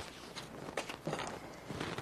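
Faint room noise: a few scattered soft clicks and knocks over a low background hiss.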